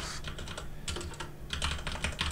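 Typing on a computer keyboard: a run of light key clicks, coming thicker in the second half.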